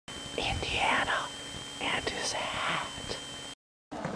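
A person whispering in two short phrases, with a faint steady high-pitched whine behind. The sound cuts off abruptly shortly before the end.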